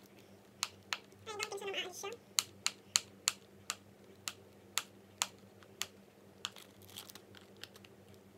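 Fingernails picking and scratching at a stuck sticker on a cardboard product box, making a string of irregular sharp clicks, about two a second; the sticker will not come off.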